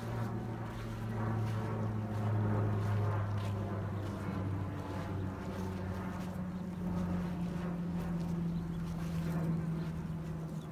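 An engine running steadily, a low drone whose pitch drops slightly about halfway through.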